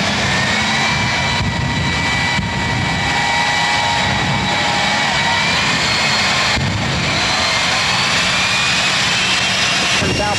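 Two jet dragsters' turbojet engines running at the starting line with their afterburners lit: a loud, steady jet noise with high whining tones that rise slowly in pitch.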